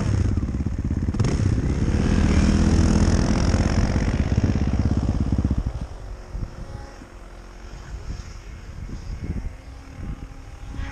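Snowmobile engine running hard under throttle, then dropping off sharply a little past halfway as the throttle is let off, leaving a quieter, uneven running sound for the rest.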